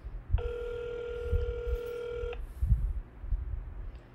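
Telephone ringback tone heard over a phone's speaker: one steady ring lasting about two seconds that then cuts off, the sign of an outgoing call ringing at the other end. Low thumps of handling noise come before and after it.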